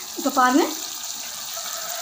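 A brief spoken word, then a steady hiss as the pressure-cooker lid comes off and the chicken curry cooks in the open pan on the gas stove.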